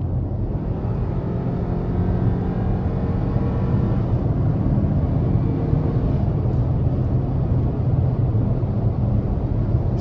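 2023 Hyundai Tucson N Line's 2.5-litre four-cylinder engine pulling hard under heavy throttle at highway speed, heard from inside the cabin over a steady rumble of road and tyre noise. The engine's tone stands out most in the first half, then settles into the road noise.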